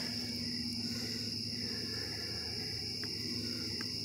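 Crickets chirring steadily in one continuous high tone, with a faint low steady hum that stops about two and a half seconds in.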